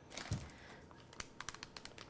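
Faint crinkling of a plastic zip-top bag being pressed shut, with a quick run of small clicks from about halfway as the seal closes and the air is squeezed out.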